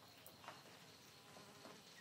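Near silence: faint ambient room tone with a few soft ticks.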